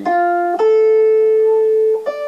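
Archtop electric jazz guitar playing two clean single notes, the start of a D-minor first-inversion triad: a short note, then a higher note held for about a second and a half.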